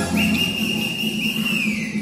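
A long high whistle, held about a second and a half and then gliding down near the end, with music playing under it.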